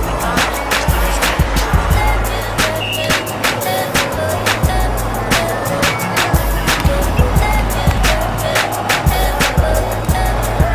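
Background music with a steady drum beat and a deep bass line.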